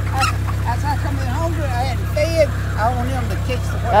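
A flock of chickens calling: short rising-and-falling calls, several overlapping, a few each second, with a louder call near the end, over a steady low hum.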